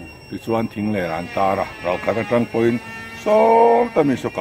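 A man speaking, with one long drawn-out syllable near the end; only speech.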